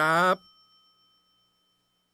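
A man's voice ends on a final word, cut off abruptly about a third of a second in. A faint, high ringing tone of a few pitches is left behind and fades out over the next second or so.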